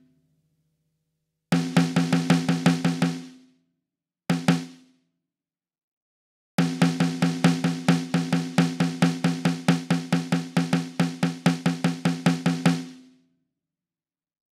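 Sampled Tama Bell Brass snare drum in the BFD3 virtual drum plug-in, played as fast runs of repeated strokes: a run of about two seconds, a brief burst, then a long run of about six seconds, each stroke leaving a low ringing shell tone.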